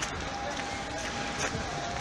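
Street ambience: indistinct voices of passers-by and footsteps on a wet, slushy pavement, over a steady background hum of the street.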